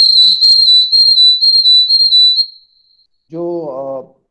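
A loud, high-pitched whistling tone, nearly steady with slight wavers in pitch, fading out about two and a half seconds in.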